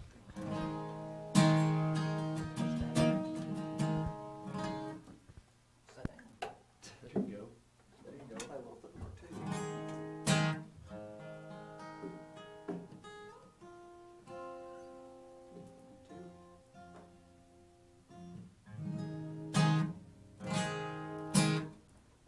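Two acoustic guitars strummed in short chords and plucked on single ringing notes, with pauses between: the players are tuning up and checking their instruments.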